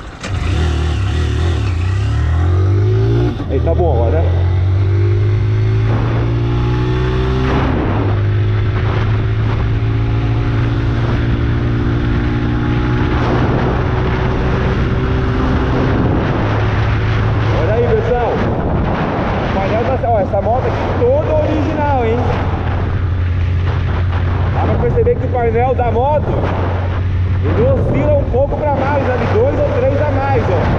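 160 cc motorcycle engine accelerating hard through the gears, its pitch climbing in steps with a brief dip in level at a gear change about three seconds in, then holding a steady cruise at highway speed with wind rushing past.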